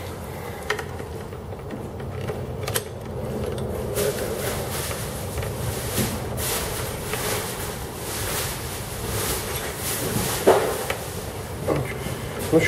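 Hand-tool handling noise: a T-handle socket wrench turning a spark plug in a motorcycle's cylinder head, with faint metal scrapes and rustles and a few sharp short knocks over a low steady hum.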